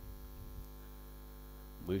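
Steady electrical mains hum through the preacher's microphone and sound system, with no words until a man's voice starts speaking near the end.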